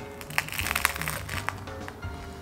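Toasted bread topped with jamón being bitten and chewed: a run of crisp crunches starting about half a second in, over soft background music.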